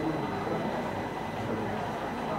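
Steady low background noise of a room, with a faint murmur of voices.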